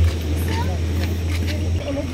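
A steady low rumble that drops in level twice, with faint voices talking in the background.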